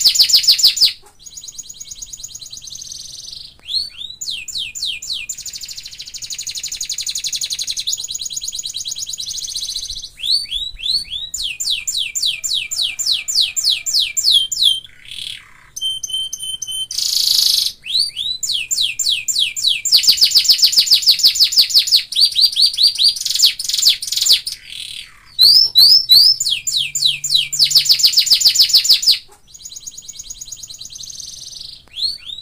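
Domestic canary singing a long, loud song: rapid trills of fast-repeated high notes, switching from one phrase to another every second or two, with brief pauses between phrases.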